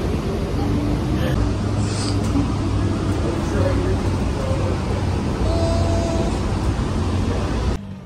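City transit bus heard from inside the cabin: a steady low engine and road rumble, with faint passenger voices in the background. The rumble cuts off just before the end.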